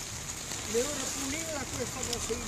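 Steady hiss of rain falling on a wet street, with faint voices talking in the background from about the middle on.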